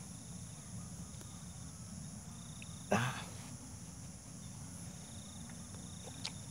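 Insects trilling steadily and faintly in the grass, with one brief louder sound about three seconds in.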